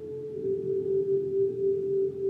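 Slow ambient electric guitar music: long held, wavering notes, with a slightly lower note swelling in about half a second in and ringing on.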